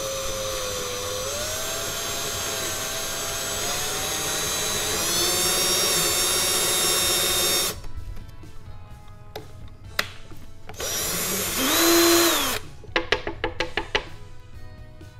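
Power drill with a 1/8-inch bit boring a side hole into a small wooden game tile. The motor whine wavers and rises in pitch with the load for about eight seconds, then stops. Near the end the drill spins up and back down once more briefly, followed by a few light clicks.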